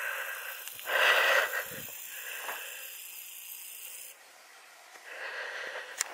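A person's breathing close to the microphone, a few breaths with no voice in them. The loudest breath comes about a second in and another near the end.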